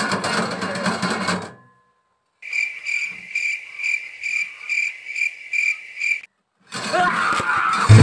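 Cricket chirping: an even, high, pulsing chirp about two to three times a second for roughly four seconds, set off by hard silence on both sides like the stock 'crickets' comedy sound effect. Music fades out just before it, and music starts again near the end.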